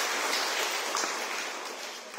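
A crowd applauding, the clapping slowly dying away.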